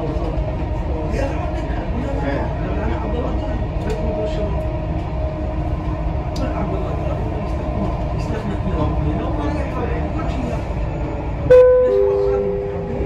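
Dubai Metro train running, heard from inside the car: a steady rumble of wheels and motors with a faint steady whine. Near the end, a two-note chime, high then lower, sounds as the onboard next-station announcement begins.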